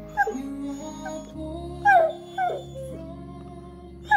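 A basset hound whining in several short calls that slide down in pitch, the loudest about two seconds in. It is begging for food. Background music plays underneath.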